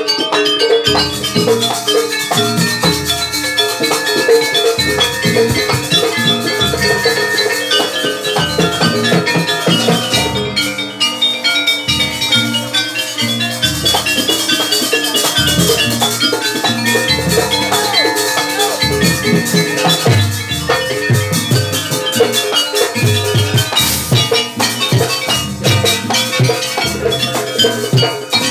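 Live jaranan gamelan music: double-headed kendang drums beat a steady rhythm under ringing metallophones and gongs, playing without a break.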